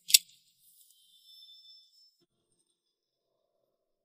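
A single sharp high-pitched hit just after the start, ringing on as two high steady tones that fade out about two seconds in, then near silence.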